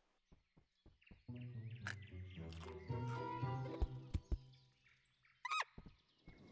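Soft orchestral film score: quiet sustained low notes with lighter plucked notes above, coming in a little over a second in after a few faint clicks. Near the end there is a short squeaky gliding call from a cartoon rodent.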